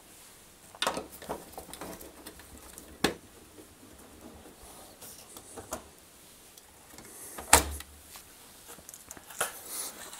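A screwdriver undoing the screws that hold a tumble dryer heater to the sheet-metal back panel, and the heater being lifted off. There are a few scattered light clicks and knocks, the loudest about seven and a half seconds in.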